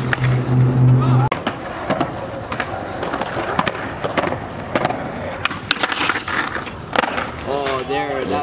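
Skateboard rolling on concrete, with sharp clacks and knocks of the board hitting the ground. A low steady hum cuts off about a second in, and a voice calls out near the end.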